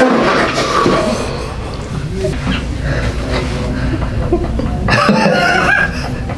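A woman laughing and exclaiming without words in surprise, loud from the very start, with a man laughing along.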